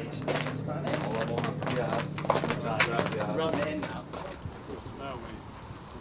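Indistinct chatter of several men's voices, with scattered clicks and knocks, over a steady low hum that drops away about four seconds in.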